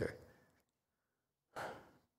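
The end of a man's spoken word dying away, then quiet, and about a second and a half in one short, breathy sigh-like breath with no voice in it.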